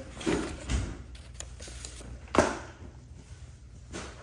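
Paper sheets and a folder being handled and shuffled: scattered rustles and light knocks, with one sharp, louder rustle-knock about two and a half seconds in.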